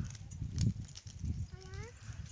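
Outdoor low rumbling noise on the microphone, and near the end a short animal call that rises in pitch.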